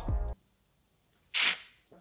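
A man's speech, over low background music, cuts off at the start, then near silence, then a single short, sharp in-breath through the mouth about a second and a half in, taken just before speaking again.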